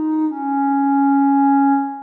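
Sampled clarinet played from a homemade Kontakt sample instrument with its scripted fake legato on: one note slurs down into a lower long note. The long note holds steady, then fades away near the end.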